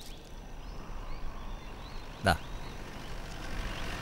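A single sharp machete chop into a tender coconut about two seconds in, over a steady outdoor background hum.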